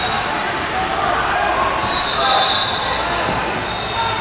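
Steady babble of many voices echoing in a large tournament hall, with a few dull thuds of bodies and feet on the wrestling mats.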